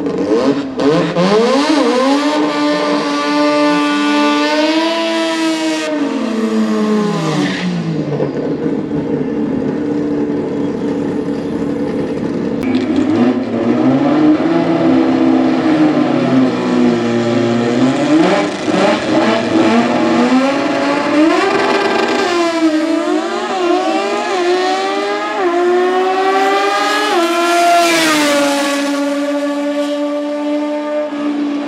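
Drag-race engines, a naturally aspirated rotary in a Toyota Starlet against a piston engine, revving repeatedly at the start line, their pitch rising and falling. Through the middle the engines hold steady with short blips. About three seconds from the end they launch together and accelerate hard, the pitch climbing fast.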